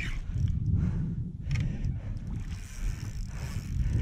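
Low rumbling noise from a fishing kayak and its gear being handled while a hooked red drum is fought on the rod, with a few faint knocks.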